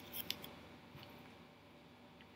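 A few faint, sharp clicks in a quiet room: a short cluster in the first half second and one more about a second in.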